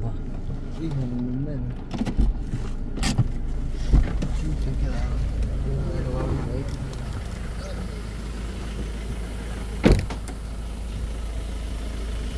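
Inside a pickup truck's cabin as it drives slowly over a rough dirt road: a steady low rumble, broken by a few sharp knocks, the loudest about ten seconds in.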